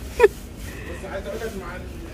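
A short, loud spoken syllable right at the start, then faint voices talking in the background.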